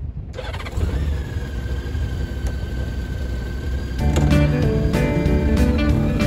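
A Honda Gold Wing motorcycle's flat-six engine running with a low rumble. Music comes in over it about four seconds in.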